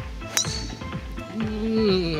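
A driver strikes a golf ball off the tee once, a sharp metallic click with a brief high ring about a third of a second in, over background music. A drawn-out voice sliding in pitch follows near the end.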